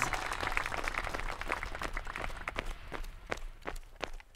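Quick, irregular running footsteps that grow steadily fainter as they fade out.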